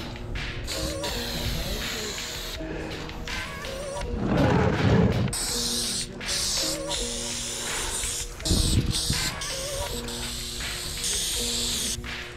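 Aerosol spray paint can hissing in short stop-start bursts while outlines are sprayed, over background music with a steady pattern of notes. Two louder rushes of noise come about four seconds in and again about eight and a half seconds in.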